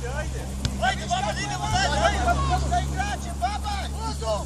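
Football players calling and shouting to one another across the pitch during a practice match: many short calls from several voices, overlapping, over a steady low hum. A single sharp thump, such as a ball kick, about two-thirds of a second in.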